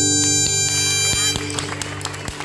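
Harmonica and acoustic guitar holding the final chord of the song, which stops about a second and a half in. Scattered claps follow as applause begins.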